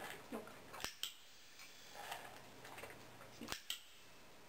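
A dog-training clicker clicking twice, about a second in and again near the end, each sharp click followed at once by a softer second one; the click marks a correct behaviour. Faint small shuffling sounds between the clicks.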